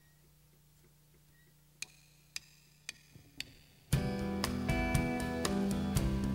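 A low steady hum, then four sharp clicks about half a second apart counting the song in, likely drumsticks struck together; about four seconds in, the full rock band comes in loudly with electric and acoustic guitars, bass and drums.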